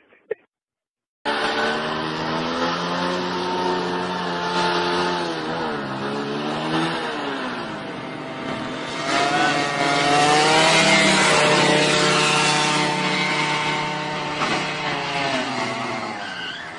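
A motorcycle engine running hard and revving, starting about a second in; its pitch dips and climbs again several times over a steady rush of noise, and it gets louder about halfway through.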